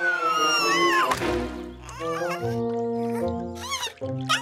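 Cartoon background music, with a falling whistle-like glide in the first second. High, squeaky wordless character vocalizations follow in the last two seconds.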